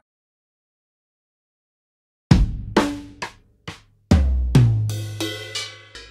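Sampled drum kit from the Spitfire LABS 'Drums' virtual-instrument preset, played note by note from a MIDI keyboard. After about two seconds of silence come about eight separate hits, the two deepest booms about two and four seconds in, the later hits ringing with cymbals and reverb.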